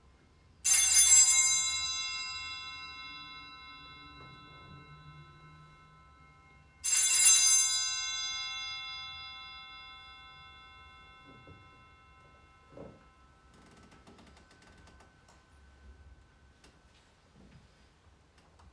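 Altar bells rung twice about six seconds apart, each ring bright at first and fading slowly over several seconds, marking the Benediction of the Blessed Sacrament.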